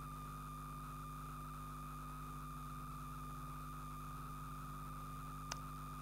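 Faint steady electrical hum with a thin high whine over it, the background of the recording system, and one small click near the end.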